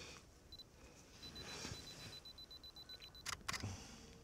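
Camera self-timer beeping faintly: one short beep, then a rapid run of beeps for about two seconds, followed by the shutter firing with two quick clicks.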